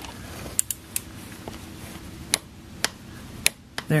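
Ratcheting torque wrench with an 8 mm Allen bit tightening a motorcycle's oil drain plug to 25 N·m, giving about seven separate sharp metallic clicks spread out, the loudest near the end as the plug reaches its torque.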